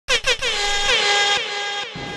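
DJ air-horn sound effect: two short blasts, then one long held blast whose pitch dips twice before it cuts off.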